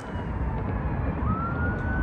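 A siren, faint under a steady low rumble of city traffic, wailing in one slow sweep that falls in pitch and then rises again about a second in.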